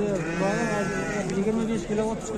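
A sheep bleating, one long bleat lasting about a second near the start, with shorter calls after it.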